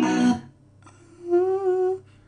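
A pop song with a male singer cuts off about a third of a second in. After a short pause, a man hums a single held note with a slight waver near the end.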